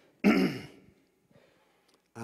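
A man clears his throat once into a handheld microphone, briefly, about a quarter second in.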